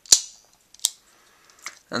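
Small plastic toy switch pieces clicking as they are handled: three separate sharp clicks, the first and loudest just after the start, one near the middle and a softer one shortly before the end.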